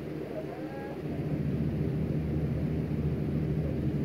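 Low steady rumble that grows louder about a second in, with faint distant voices.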